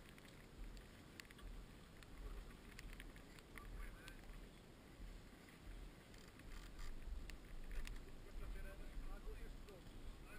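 Wind buffeting the camera microphone in uneven low gusts, with faint short chirps here and there.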